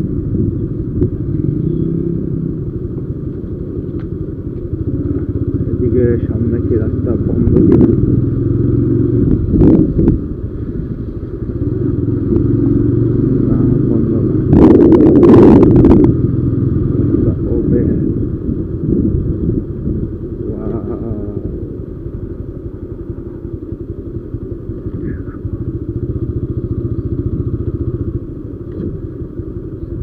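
TVS Apache RTR 160 single-cylinder motorcycle engine running at low riding speed from the rider's seat, its pitch shifting as the throttle changes. A brief loud rush of noise comes about halfway through.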